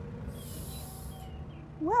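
A steady low outdoor background hum with a brief soft hiss about half a second in; near the end, a woman starts to speak with a drawn-out, wavering "well".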